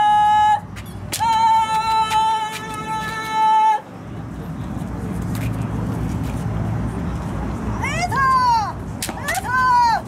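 Kendo kiai: long, steady, high-pitched shouted cries from armoured kendoka, with sharp cracks of bamboo shinai strikes. A held cry fills the first few seconds, then a quieter stretch, then two shorter cries that rise and fall near the end.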